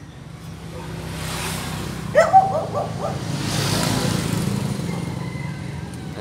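A vehicle passing on the nearby road: a low rumble and tyre hiss swell to a peak about four seconds in and then fade. A short high-pitched call sounds about two seconds in.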